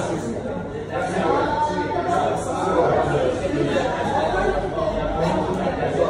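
Background chatter: several people talking at once, a steady murmur of overlapping voices with no clear words, filling a large room.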